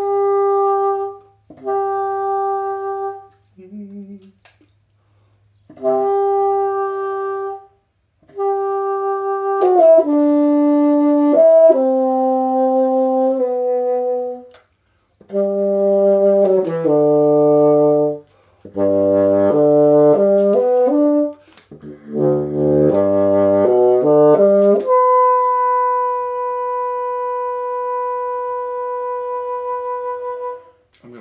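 Solo bassoon, fitted with a Wolf Grundmann straight-bend bocal, playing a slow melody in short phrases with brief pauses between them. The notes move quickly in the middle, and the passage ends on one long held note.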